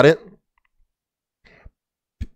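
A man's voice ends a word, then near silence with a faint, short click about a second and a half in.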